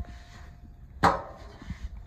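A sharp metallic clank with a short ringing tail about a second in, from the industrial sewing machine and its table being handled as it is opened up. The ring of an earlier knock fades out at the start.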